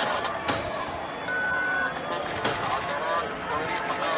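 Several people's voices talking, with a sharp bang about half a second in and a short, steady high beep around a second and a half.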